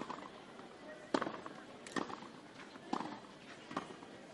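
A tennis ball bounced on a clay court before a serve: five short knocks about a second apart, over a low murmur from the crowd.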